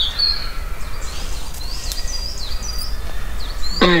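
Small birds chirping in short, sliding notes over a steady low outdoor rumble.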